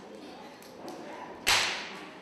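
A single sharp smack, like a hand slap, about one and a half seconds in, over faint hall background noise.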